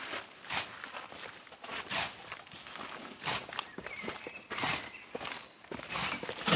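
Long-handled pruning hook slashing into a leafy hedge, each stroke a short swish of blade through leaves and twigs, coming about every second and a half.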